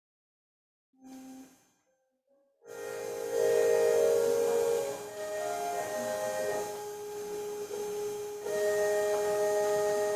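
Silent at first, then a brief spoken "thank you"; about three seconds in, a keyboard begins playing slow chords of long, steady held notes that change every few seconds.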